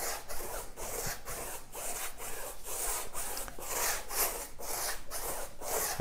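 Paintbrush stroking back and forth over canvas, applying gloss varnish: a repeated swishing rub of bristles at about three strokes a second.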